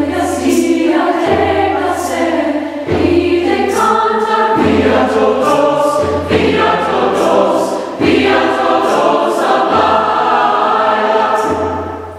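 Large mixed choir of men's and women's voices singing a choral piece in phrases of a second or two, with brief breaks between phrases; it fades near the end.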